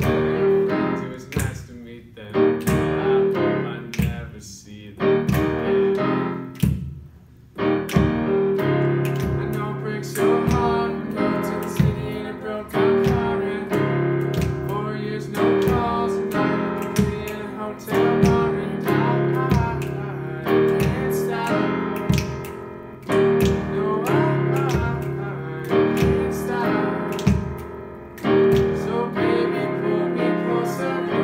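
Casio digital piano playing chords, sparse and halting for the first several seconds, then steady and full from about seven seconds in, with voices singing along and sharp clicks in time with the music.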